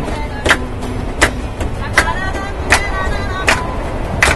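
Several people clapping hands together in a steady beat, about one clap every three-quarters of a second, over the constant low rumble of a moving train, with faint music underneath.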